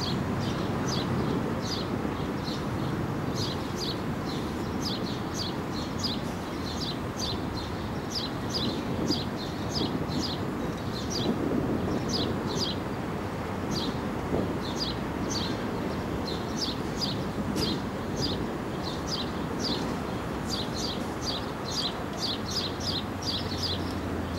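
Small birds chirping over and over in quick, high, falling notes, in bursts throughout, over a steady low rumble.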